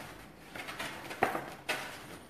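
Stiff paper petals rustling as they are handled and pressed into place, with two short, sharp crackles a little past the middle.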